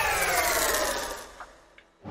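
Logo-intro sound effect: a sweep of several tones falling in pitch together, fading out about a second and a half in.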